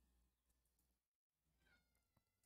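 Near silence: muted room tone, with only a very faint high pitched tone near the end.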